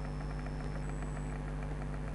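Steady low hum with light hiss, unchanging throughout: room tone, with no other event.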